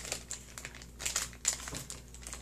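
Clear plastic blind-bag packaging crinkling in several short, irregular rustles as it is handled.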